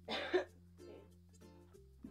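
A single short cough right at the start, over soft plucked-string background music.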